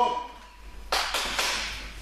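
A quick run of slaps about a second in, boxing-gloved punches hitting a hand-held focus mitt, fading in the hall's echo.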